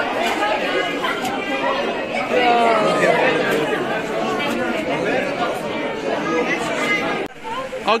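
Many people talking at once in a large hall, a dense steady crowd chatter that cuts off suddenly about seven seconds in.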